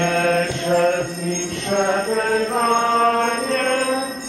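Slow liturgical singing: a single melody line that moves in steps, with long held notes.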